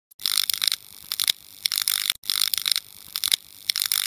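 Intro sound effect of short bursts of scratchy, hissing noise repeated several times, with sharp clicks between them.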